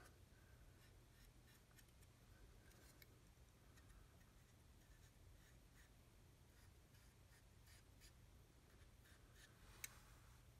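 Near silence, with the faint scratching of a small weathering applicator rubbing pigment onto a plastic scale model, and one sharp click just before the end.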